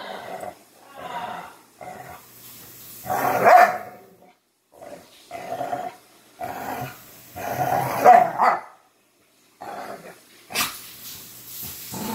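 Two dogs play-fighting, with repeated short bouts of growling and barking every second or so, two of them louder, about three and a half and eight seconds in. The growls come from an older dog warning off a pestering puppy.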